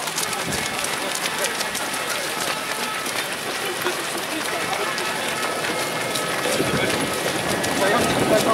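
Footsteps of a large pack of runners on a wet asphalt road, many overlapping footfalls, with indistinct voices that grow louder near the end.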